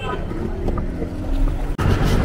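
Street noise: a steady low rumble of wind on the microphone and traffic, broken by a sudden cut near the end.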